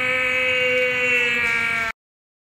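A man's loud, long scream held on one pitch, cut off suddenly near the end.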